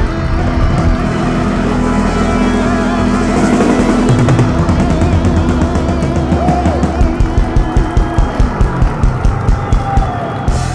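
Live rock band playing the final bars of a song: sustained guitar and keyboard chords over drums. About seven seconds in, the drummer switches to a run of hard, evenly spaced hits, about four a second, building to the ending.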